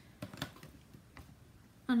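A few light clicks and taps of small plastic craft supplies being handled on a tabletop: a couple close together near the start and one more a little after a second in.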